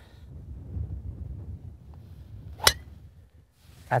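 A golf club striking the ball off the tee: one sharp crack about two and a half seconds in, from a well-struck tee shot.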